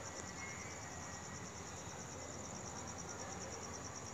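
Crickets chirping faintly: a high, rapidly pulsing trill that holds steady, over a low background hiss.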